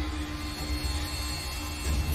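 Dramatic background score music: a deep, steady low drone under a held note that fades out a little past halfway.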